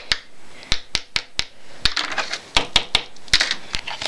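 Handling noise on a wooden desk: irregular sharp clicks and light knocks, about a dozen in four seconds.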